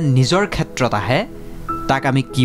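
A voice speaking over background music with steady held tones; the voice drops away near the end, leaving the music.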